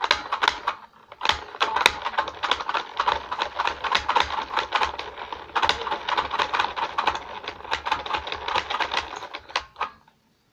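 Plastic toy spin art machine spinning fast: a loud, dense rattle of rapid plastic clicks with a faint steady hum under it. It breaks off briefly about a second in, starts again, and cuts off sharply at the end.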